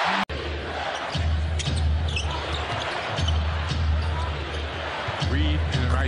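Basketball arena game sound: crowd noise with the ball bouncing on the hardwood court and short high squeaks, over a low steady hum that breaks off a few times. A brief dropout about a quarter second in, where the footage cuts.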